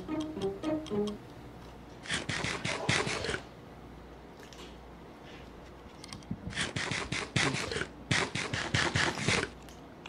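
Crunching and munching of a toasted sandwich being bitten into and chewed, in three bursts of rapid crunches.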